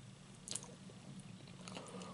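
Close-miked chewing of a mouthful of food, wet mouth sounds with a few sharp clicks, the loudest about half a second in.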